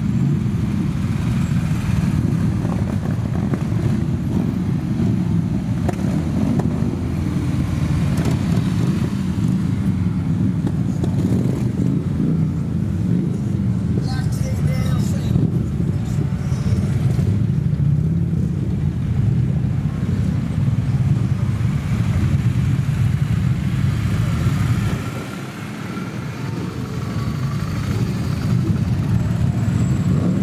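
A slow convoy of motorcycles and cars passing at walking pace, their engines running in a steady, dense low rumble, with crowd voices mixed in. The level dips briefly a little before the end.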